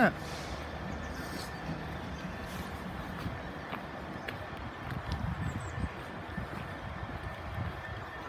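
Passenger train drawing slowly into the platform: a steady low running rumble with a faint thin high tone above it, and a few soft irregular low knocks about five seconds in.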